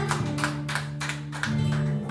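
Live acoustic band playing: acoustic guitars strumming a quick Latin-style rhythm, about four strums a second, over sustained bass guitar notes, with a hand drum.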